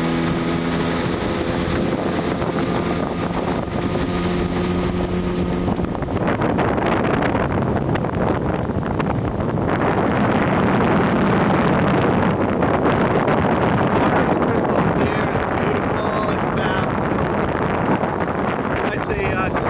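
Small outboard motor on an aluminum boat running steadily under way, its even engine tone clear for the first six seconds or so. After that a louder rushing noise of wind on the microphone and water covers the engine for the rest.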